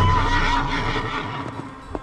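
A horse whinny sound effect laid over a dramatic musical sting that opens with a low boom and fades away over about a second and a half.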